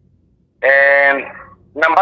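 A voice holding one long, steady note for about half a second, then trailing off, with a new phrase beginning near the end.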